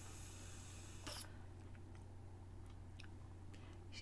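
Faint airy hiss of a draw on a pod vape in the first second, then a brief sharp puff about a second in, with a few faint ticks after. A steady low hum runs underneath.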